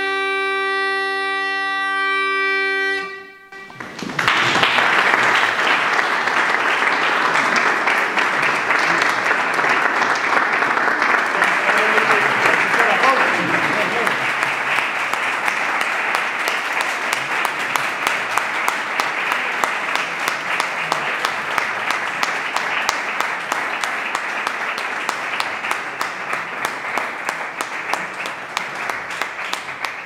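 A Galician bagpipe (gaita galega) holds a final chanter note over its steady drones and stops about three seconds in. An audience then applauds steadily, the clapping thinning a little near the end.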